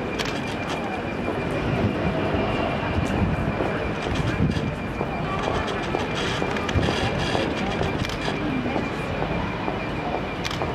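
City street ambience: traffic noise mixed with indistinct chatter from onlookers, with a faint steady high tone running underneath.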